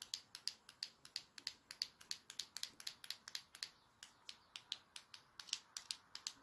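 A rapid run of sharp clicking taps, about four to five a second, uneven in loudness, over a faint hiss.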